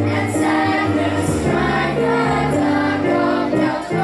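A children's choir joined by adult women's voices singing a Christmas carol, with held notes over a low musical accompaniment.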